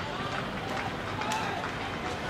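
Faint voices of players calling across an open cricket ground, over a steady outdoor background noise.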